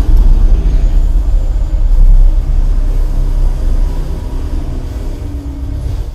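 Velodyne HGS-12 12-inch sealed subwoofer playing a movie soundtrack's deep bass rumble at high volume, its cone making large visible strokes. The rumble tapers off over the last few seconds.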